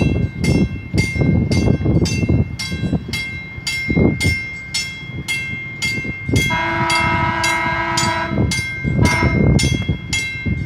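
Drawbridge warning bell ringing steadily at about two strokes a second while the traffic gates are down for a bridge opening. About six and a half seconds in, a horn sounds one long blast of about two seconds, with a brief second tone just after.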